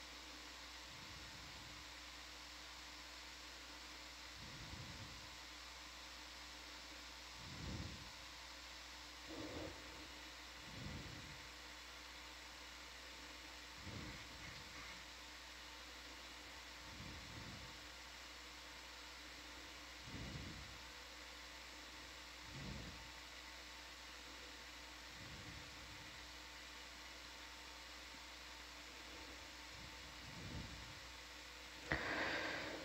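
Faint steady hiss and hum of an open control-room microphone, with soft low thumps every two to three seconds.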